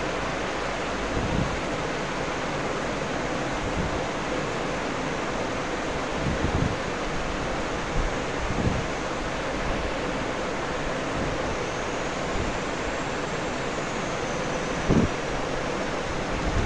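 Steady hiss of recording background noise with a faint steady hum, broken by a few soft, short low knocks.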